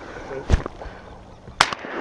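Shotgun fired twice at flushing teal, two sharp reports about a second apart.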